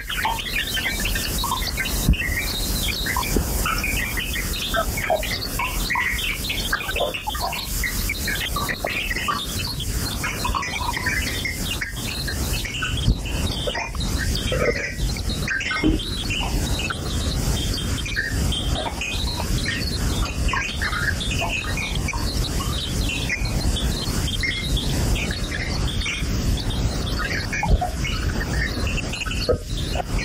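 Experimental noise (bruitiste) electroacoustic track: a dense, steady noise bed with many short high-pitched squeaks scattered throughout.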